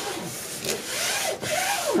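Hands rubbing and pressing a sheet of paper flat against the paper below, a continuous rough rustle as a freshly folded strip is smoothed down.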